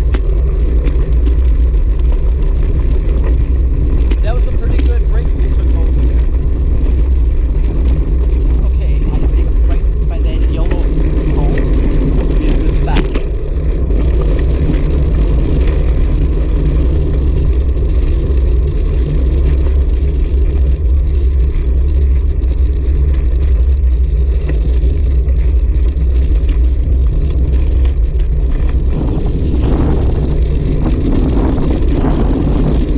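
Wind buffeting the microphone of a bicycle-mounted camera, mixed with the rumble of road-bike tyres on a rough paved path: a steady low roar. One sharp knock a little before halfway, like the bike jolting over a bump.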